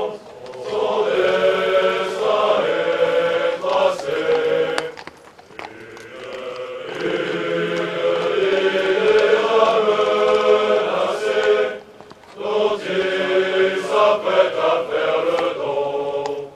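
A large group of French officer cadets singing their promotion song together in sustained phrases, with a quieter break about five seconds in and a short pause about twelve seconds in.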